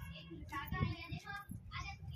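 Faint children's voices, high and pitched like calling or sing-song chatter, over a low steady rumble.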